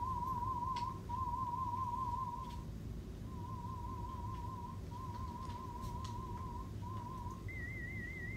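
Warbling 1,000 Hz test tone from an online hearing test, sounding in a string of pulses with short breaks and a little quieter after about two seconds. Near the end it switches to a higher warbling 2,000 Hz tone.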